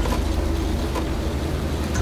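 Steady low hum and room noise of a large lecture hall, with no speech.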